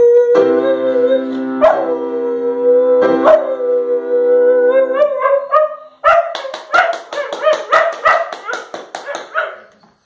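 Schnauzer howling one long, wavering note along with sustained piano chords. After the piano stops about five seconds in, the howl breaks into a rapid run of short yips, about five a second, that fade out near the end.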